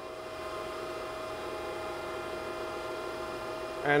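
Okamoto ACC-1224-DX surface grinder running, a steady electric hum made of several held tones, with no change in pitch or level.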